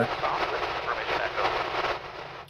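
A steady rushing hiss, presented as leftover flight noise venting from a black plastic duct out of the aircraft's side window. It is even and without a beat, and eases slightly near the end.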